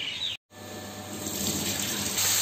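Mixed vegetable sabzi sizzling under the glass lid of a kadai on a gas stove: a steady hissing that grows louder over the second half. Before it, the sound cuts off abruptly for an instant about half a second in.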